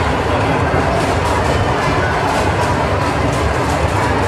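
A children's amusement ride car rolling along with its riders, making a steady rumble and clatter.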